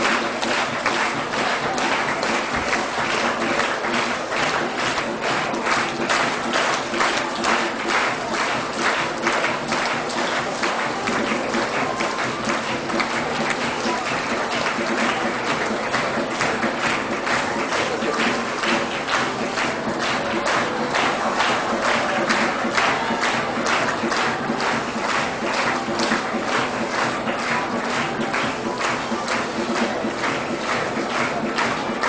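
Background music with an audience clapping steadily throughout.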